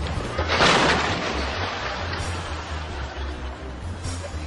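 A large tree falling and crashing down onto a parked car: one loud crash about half a second in that trails off into a long noisy rustle.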